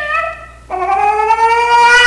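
A man imitating a dog with his voice: a short falling whine at the start, then a long, high howl beginning about two-thirds of a second in.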